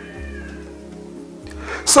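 Soft background music: held keyboard chords over a low bass note, with a faint high note that bends down and fades within the first second.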